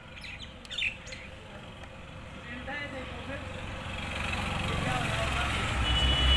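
A motor vehicle approaching, its engine and road noise rising steadily over the second half and loudest at the end, with a few short chirps near the start.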